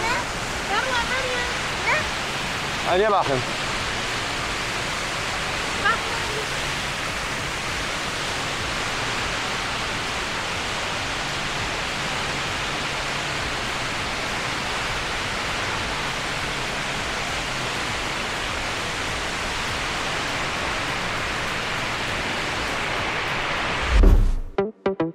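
The Rain Vortex, a tall indoor waterfall, pouring through the roof into its basin: a constant, even rush of falling water.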